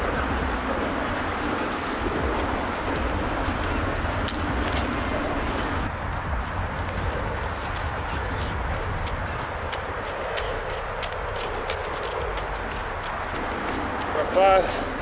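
Footsteps on a rubber running track, a run of light irregular clicks, over a steady low outdoor rumble.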